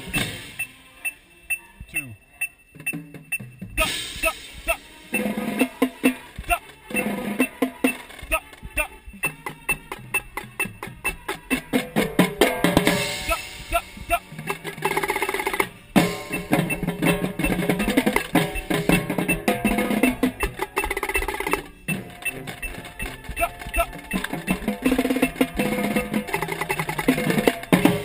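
Marching tenor drums played close up, in fast runs of strokes over the full marching band playing its opener. The first few seconds are quieter, and the drumming turns dense from about four seconds in.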